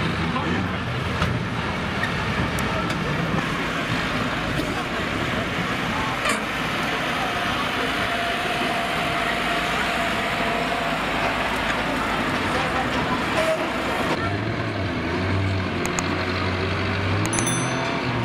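Motor-racing trackside din: engines running with indistinct talking over them, the mix changing about fourteen seconds in.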